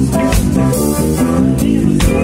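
Live funk band playing: electric guitar, bass guitar and drum kit in a steady groove.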